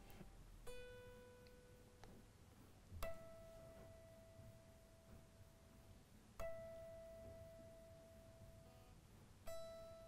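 Fender Stratocaster electric guitar, unamplified and quiet, plucked one string at a time at the twelfth fret to check intonation against a tuner. One note comes about a second in, then a higher note is plucked three times, each left to ring out and fade over two to three seconds.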